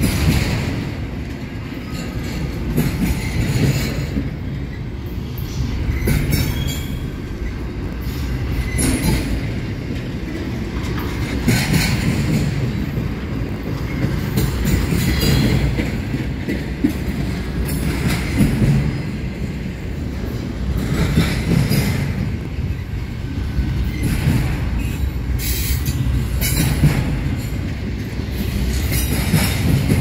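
Double-stack intermodal freight cars rolling past at close range: a steady low rumble of steel wheels on rail, with sharp clicks and brief wheel squeals recurring every two to three seconds as the trucks pass.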